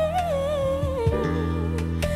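A woman sings a long held note with vibrato that slides downward, over a live band's steady guitar accompaniment.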